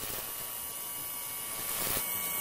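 Steady electric hum with a hiss, like the buzz of a lit neon sign.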